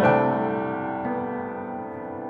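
Instrumental music: a piano chord struck at the start, ringing and slowly fading, with a lighter note added about a second in.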